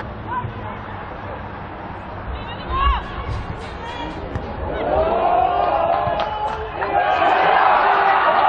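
Live pitch sound at a football match: scattered shouts from players and spectators, with a dull low thump about three seconds in. The voices grow louder and denser from about seven seconds in.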